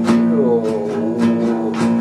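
Acoustic guitar strummed, four strokes about half a second apart over sustained ringing chords.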